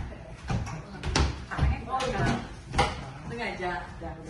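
About five dull thumps, some close together, over scattered voices and murmurs of a group of people.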